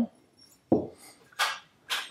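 Handling noise from steel gun parts being moved on a cloth-covered table: a soft knock about two-thirds of a second in, then a short scraping rustle.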